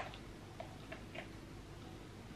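A few faint, light taps of fingers on a smartphone screen, over quiet room tone.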